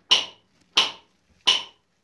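Hammer blows on a chisel against rock: three sharp, evenly spaced strikes about two-thirds of a second apart, each ringing briefly.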